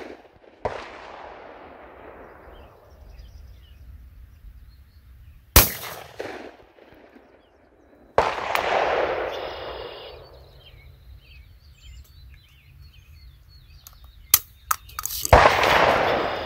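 Handgun shots fired one at a time, several seconds apart: a sharp crack about five and a half seconds in and two more near the end. Sudden rushing noises about half a second in and about eight seconds in fade away over a couple of seconds.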